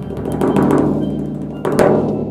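Drum kit played hard: a fast run of drum hits, then one loud hit with a cymbal crash near the end that rings on as it fades.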